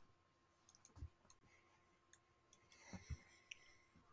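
Near silence broken by a few faint computer mouse clicks, one about a second in and two close together about three seconds in.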